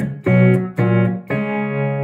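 Guitar chords played through a homemade STM32 digital tremolo pedal, struck three times about half a second apart and left ringing. The tremolo depth is set low, so the tone is fairly clean with little volume pulsing.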